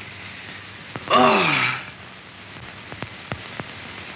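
A man's voice gives one drawn-out vocal sound with a falling pitch about a second in, over the steady hiss of an old film soundtrack. A few faint clicks follow later.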